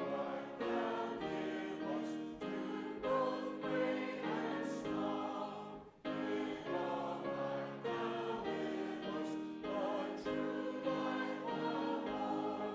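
Church congregation and choir singing a hymn together in held chords that move line by line, with a brief break for breath about six seconds in.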